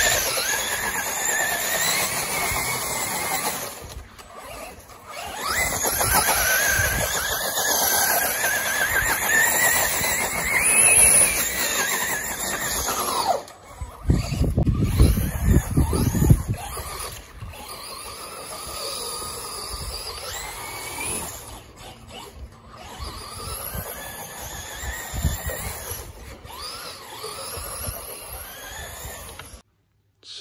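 Electric RC car's motor and drivetrain whining, its pitch rising and falling again and again as the car accelerates, spins and slows with tape-wrapped rear wheels sliding on grass. A loud low rumble comes in for about two seconds a little past halfway.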